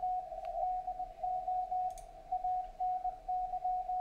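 Morse code (CW) signal on the 40-metre amateur band, received in CW mode on a software-defined radio: a single steady tone keyed on and off in dots and dashes over faint receiver hiss.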